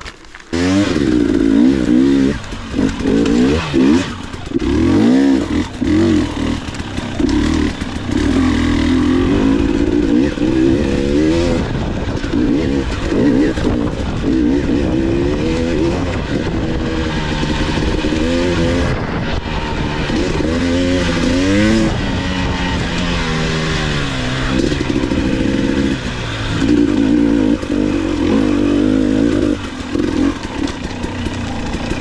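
Dirt bike engine being ridden hard on a rough trail, revving up and down over and over as the throttle is opened and chopped, its pitch rising and falling. It starts abruptly about half a second in.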